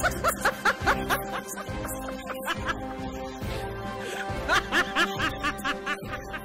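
Background music, with two bouts of laughter: one in the first second and another about four and a half seconds in.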